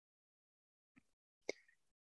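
Near silence in a pause of speech, with one short faint click about a second and a half in.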